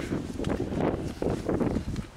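Wind buffeting the handheld camera's microphone: an uneven low rumble with rustling that swells and drops irregularly.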